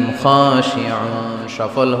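A man reciting Arabic Quranic verses in a slow, melodic chant, holding long notes and sliding between pitches, with a brief break about three-quarters of the way through.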